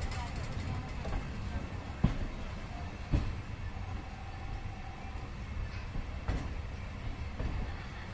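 Passenger coach of an Indian Railways express rolling slowly along a station platform: a steady low rumble from the wheels, with two sharp knocks about two and three seconds in.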